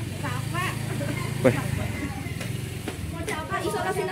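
A vehicle engine running at a low, steady idle for the first couple of seconds, then fading out, with faint talking over it.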